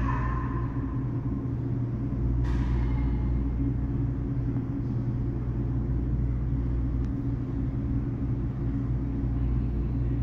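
A steady low rumble and hum of machinery, with a brief higher-pitched sound at the start and another about two and a half seconds in.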